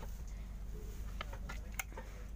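Steady low rumble inside an air-conditioned LHB railway chair car, with a few faint clicks as the plastic seat-back tray table is handled.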